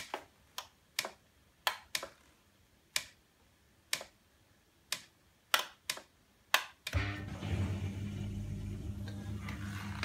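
Miele G 560 dishwasher starting its programme: about a dozen sharp, unevenly spaced clicks, then about seven seconds in the drain pump starts with a steady low hum, pumping out any water left in the sump.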